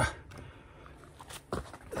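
A pause in a man's speech: faint background noise with a few soft clicks and rustles about one and a half seconds in, and his voice resuming right at the end.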